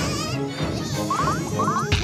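Cartoon buzzing sound effect, like something vibrating rapidly, with two quick sets of three short rising chirps a little past the middle.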